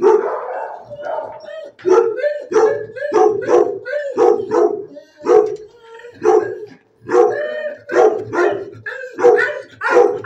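A dog barking over and over in short, regular barks, about two a second, pausing briefly about seven seconds in.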